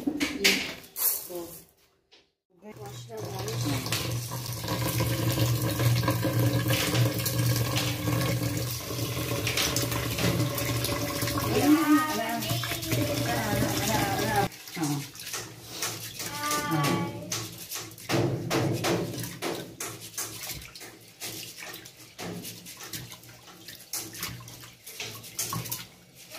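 Kitchen tap running into an aluminium rice cooker pot of rice in a stainless steel sink, with hands swishing the rice through the water as it is rinsed.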